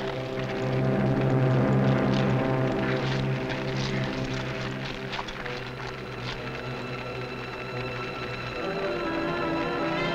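Dramatic orchestral film score with sustained chords, overlaid for the first six seconds or so by a rushing noise with many sharp crackles.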